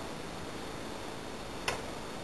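Lock pick working the pins of a TESA T60 euro cylinder under tension, giving one sharp metallic click about one and a half seconds in, over a steady low hiss.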